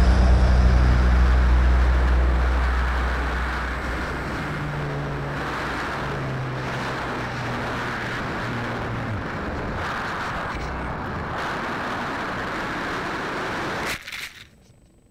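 Background music fading out over the first few seconds, leaving a steady rush of airflow over the onboard camera of a Multiplex Blizzard RC plane as it glides down with its motor cut by the ESC's low-voltage protection. It ends in a sudden impact as the plane crashes into the field.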